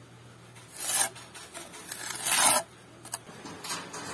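Steel pointing trowel scraping wet mortar along the joints of solid concrete blocks: a short rasping stroke about a second in, a longer and louder one midway, a light click and a shorter stroke near the end.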